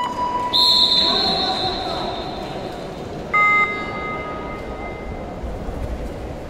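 Two blasts on an official's whistle. The first is long and high and starts about half a second in. The second is short and lower, about three seconds later. Both ring on in the hall over a steady background of crowd chatter.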